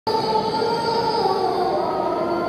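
Muezzin's call to prayer (adhan) over the mosque's loudspeakers: one long held sung note whose pitch steps down about halfway through.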